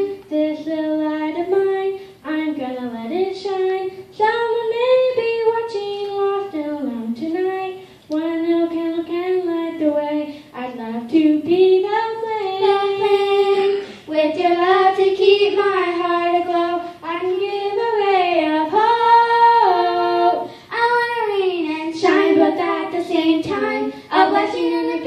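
Two young girls singing a religious song together into handheld microphones, in sung phrases separated by short breaths.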